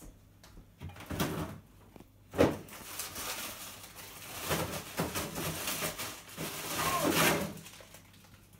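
Fridge-freezer being rummaged in: a sharp knock about two and a half seconds in as a door or drawer is pulled, then rustling and scraping of packets being moved inside.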